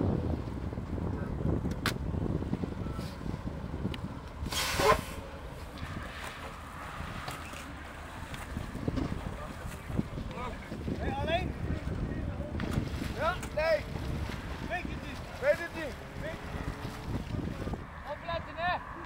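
Outdoor ambience with a steady low rumble and a short loud rush of noise about five seconds in, with voices calling in the second half.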